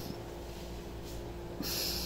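A short, hissy breath through the nose, a sniff or snort, about a second and a half in, over a faint steady room hum.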